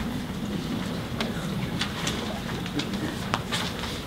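Room noise in a hall full of people waiting to perform: a low murmur of voices with a few scattered small clicks and rustles.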